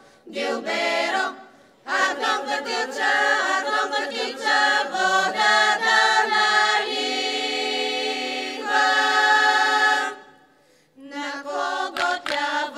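Bulgarian women's folk choir singing a cappella, in phrases with short breaks between them. A long chord is held from about seven seconds in to about ten, then the voices stop briefly before the next phrase starts near the end.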